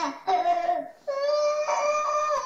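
Young child with croup giving two short, pitched, barking coughs, then a long high-pitched drawn-out sound lasting about a second and a half. The barking, metallic cough is the sign of an inflamed larynx (laryngitis, croup).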